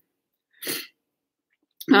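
A single short breath from a woman between sentences, about half a second in, with dead silence on either side.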